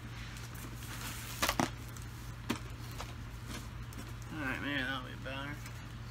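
Small objects being handled and sorted, with two sharp clicks or knocks about a second and a half in and again a second later, over a steady low hum. A few words are murmured near the end.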